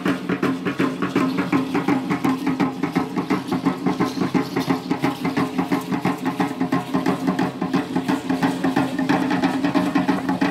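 Aztec dance music: upright huehuetl drums beaten in a fast, even rhythm, with the dancers' seed-pod ankle rattles shaking in time.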